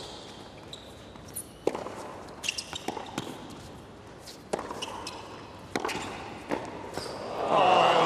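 Tennis ball struck back and forth by rackets in a hard-court rally, a sharp hit about every second with bounces between. Near the end the crowd breaks into loud cheering and applause.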